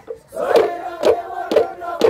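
Group of dancers chanting together in a loud, rhythmic call, with sharp beats about twice a second, starting again after a short pause just after the start.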